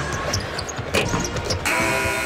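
Arena crowd noise with a few sharp knocks of a basketball during a free throw. Near the end a loud, steady arena horn comes in and holds, typical of the scorer's-table horn signalling a substitution.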